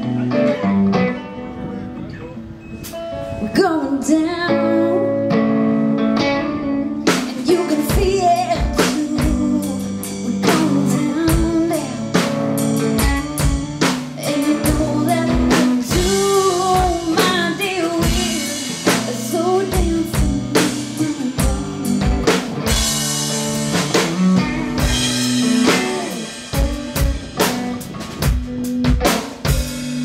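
Live band playing a song on electric guitar and drum kit, with a bending melody line running over it from about four seconds in.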